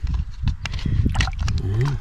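Rocks and gravel clicking and knocking under shallow water as a gloved hand digs through a muddy riverbed, with water sloshing. A short voice sound comes near the end.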